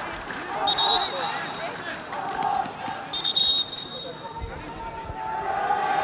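Football pitch-side ambience: faint, distant shouts of players and spectators over a steady background. Two short, high-pitched tones come about one and three seconds in, and a dull thud of a ball being struck comes about four and a half seconds in.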